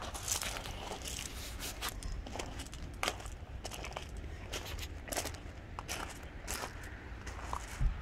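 Footsteps crunching on loose gravel, an irregular series of short crunches about two a second, over a low steady rumble.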